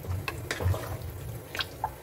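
Wooden spatula stirring mutton pieces in thick, wet masala inside an aluminium pressure cooker. Wet stirring sounds with several brief scrapes and knocks against the pan.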